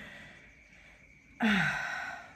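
A woman's breathy laughing sigh: a voiced exhale about a second and a half in that falls in pitch and fades away.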